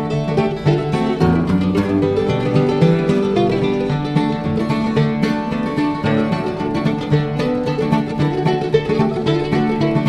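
Acoustic bluegrass string band playing an instrumental break between sung verses: plucked strings over a steady, even rhythm, with no singing.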